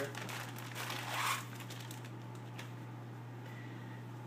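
Clear plastic bag crinkling and rustling as a bundle of paracord is pulled out of it, loudest about a second in and then dying away.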